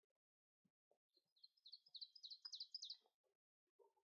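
A songbird singing, faint: one song of quickly repeated high notes that grow louder, starting about a second in and lasting about two seconds. A few faint low thuds are heard around it.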